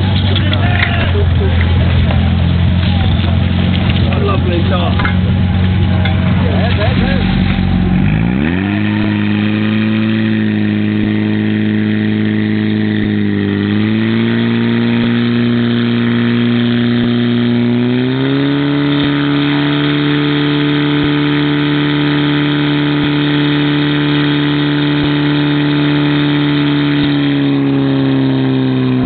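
Portable fire pump engine running under full load, pumping water through the suction hose from the basin. It starts as a low rumble and revs up to a high, steady note about eight seconds in, sags briefly near the middle, then climbs to a higher pitch a few seconds later and holds there.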